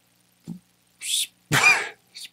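A man's short breathy laugh: two quick puffs of breath about half a second apart, the second louder.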